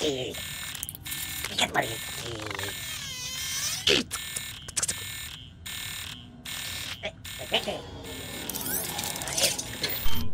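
Sci-fi computer-interface sound effects: a run of electronic beeps, blips and warbling chirps with alarm-like tones, broken by several sudden cut-outs as the hacked download is terminated.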